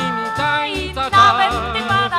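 1958 Polish pop song recording: a voice holds the sung word "wrażeń" at the start, then a melody with vibrato carries on over a steady, repeating bass beat.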